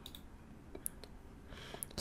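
A few faint, short clicks from operating a computer, about one second in and again near the end, over low room hiss.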